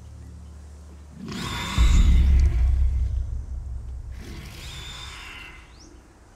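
Film sound design for an unseen monster: a deep, loud rumble with a rushing hiss swells in about a second in and hits hardest just after. It fades, with a second, quieter rush around four seconds in. It sits over a low steady drone.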